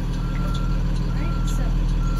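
School bus backup alarm beeping as the bus reverses: a single steady tone, about one beep a second, over the low running of the bus's engine.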